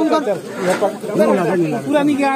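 Several men talking at once in overlapping, excited voices.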